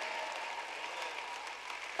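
Steady audience applause in a large hall.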